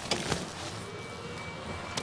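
Cabin noise inside a moving car: a steady rumble of the vehicle underway, with a couple of brief sharp sounds just after the start.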